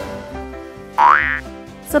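Upbeat background music with a cartoon sound effect about halfway through: a short, loud tone sliding quickly upward in pitch, like a slide whistle or boing.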